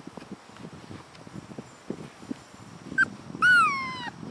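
Boxer puppy giving a brief squeak, then a loud whining yelp that falls in pitch near the end, over the soft scuffling of puppies playing on a blanket.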